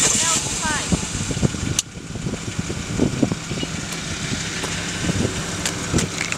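A BMW convertible's engine running, under indistinct voices, with a sudden click about two seconds in.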